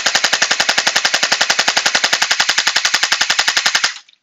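Battery-powered Anstoy Glock-style gel blaster firing full-auto through a chronograph, a rapid, even rattle of about a dozen shots a second that stops abruptly just before the end.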